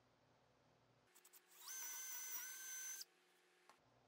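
Handheld power drill boring a bolt hole through the pine frame of a cornhole board, guided by the leg: a steady high motor whine about a second and a half long that stops abruptly.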